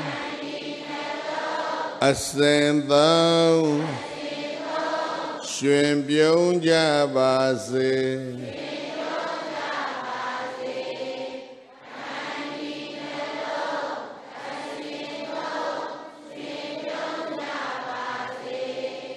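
Buddhist chanting. A single close-miked male voice sings slow melodic phrases, then from about eight seconds in a large congregation chants together in unison.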